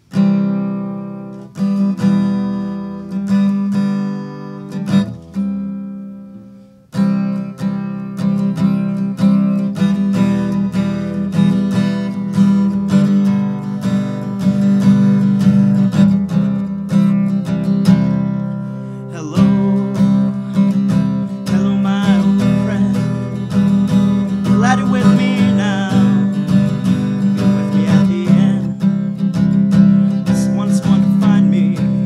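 Acoustic guitar played solo: a few chords struck and left to ring out and fade over the first several seconds, then continuous strummed playing from about seven seconds in.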